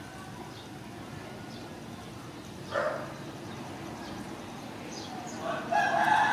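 Animal calls over steady background noise: one short, sharp call about halfway through and a louder, longer call near the end.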